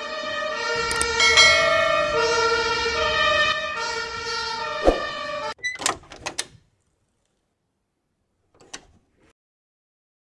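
Cartoon ambulance two-tone siren sounding, switching between a high and a low note about once a second, then cutting off suddenly about five and a half seconds in. A brief sliding-door sound follows, and there is a faint click near nine seconds.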